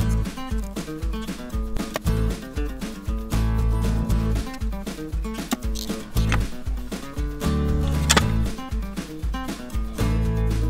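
Background music: a country tune on acoustic guitar with a steady beat.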